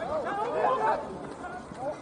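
Several voices at a baseball game calling out and chattering at once, with no clear words, loudest about half a second in as a play unfolds on the field.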